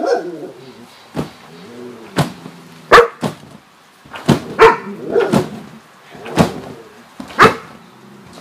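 A dog barking repeatedly, short single barks about once a second with short pauses between.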